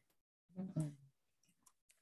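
Near silence, broken about half a second in by a brief murmured voice sound lasting about half a second, then a few faint clicks in the second half.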